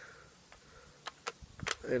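A .22 rifle being loaded by hand: a few sharp clicks from its action about a second in, after a quiet start.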